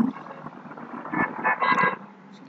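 A man's drawn-out hesitant 'aah' ending at the start, then low hiss and a few quiet, mumbled speech fragments in the second half.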